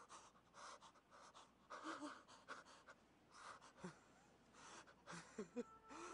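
A person panting hard: faint, irregular short breaths, with a couple of small voiced gasps near the end.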